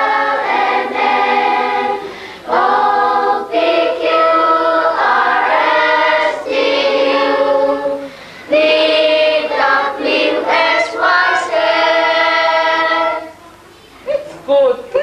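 A class of schoolchildren singing together in unison, unaccompanied, in several held phrases with short breaks between them; the singing stops shortly before the end.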